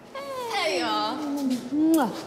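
A person's drawn-out wordless vocal sound: one long call sliding down in pitch over about a second and a half, with a short rise near the end.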